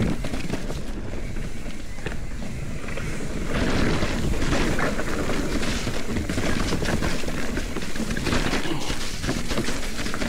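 Mountain bike rolling fast down leaf-covered dirt singletrack: the tyres hiss and crunch through dry leaves and the bike rattles over rocks and bumps, with wind noise on the microphone underneath.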